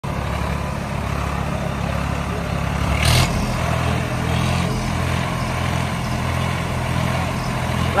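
Swaraj tractor's diesel engine running steadily, with a brief hiss about three seconds in.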